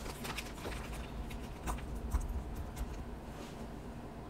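Plastic packaging crinkling, with scattered light clicks and crackles, as a small metal CVD axle shaft is handled out of its bag and card backing.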